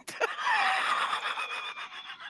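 A person's long, breathy exhalation of laughter, lasting about a second and a half and fading out before the end.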